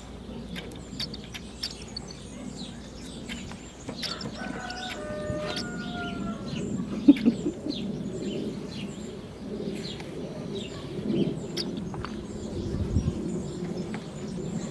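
A rooster crows once, a drawn-out call of about two seconds starting about four seconds in, over the repeated chirping of small birds. A single sharp tap comes about seven seconds in.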